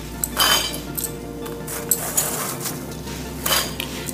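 Handfuls of roasted makhana (fox nuts) dropping into a stainless-steel mixer-grinder jar: several light clinks and rattles against the metal.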